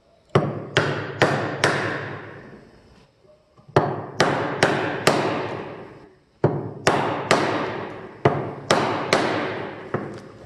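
A steel hammer striking the handle of a Narex mortise chisel, driving it into a wooden block to chop a mortise. The sharp strikes come about two a second in groups of three or four with short pauses between, and each one rings on briefly.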